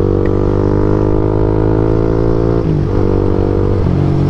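Big motorcycle's engine running under way at steady road speed, its note climbing slowly as it pulls, with a brief dip in pitch about two and a half seconds in and another just before the end.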